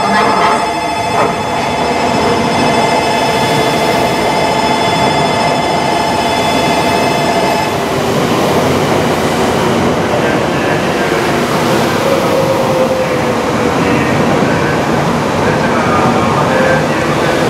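700 series Shinkansen pulling into the platform, its cars rushing past with a dense, steady rolling noise as it slows. A steady tone of several pitches runs beside it and stops suddenly about eight seconds in.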